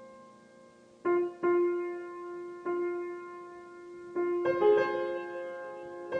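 Grand piano played solo in a slow improvisation: a chord dies away, then notes are struck one at a time about a second in, again just after and near the middle, each left to ring, and a fuller chord comes in past the four-second mark.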